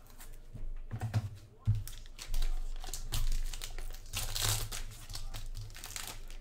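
Plastic card-pack wrapper crinkling and rustling as it is handled, with a sharp clack about two seconds in and a louder crinkle a little past four seconds.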